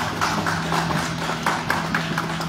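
A group of people clapping their hands, irregular claps several times a second, over a steady low hum.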